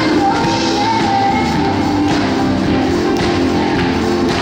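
Live amplified band music with electric guitars, keyboard and drums, and a singer's voice over it, played in a large church.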